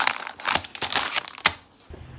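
Plastic glove packet crinkling as it is handled, a rapid run of crackles that stops about a second and a half in.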